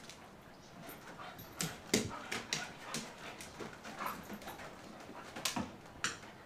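Two dogs playing, with short vocal noises and scuffling in scattered bursts, loudest about two seconds in and near the end.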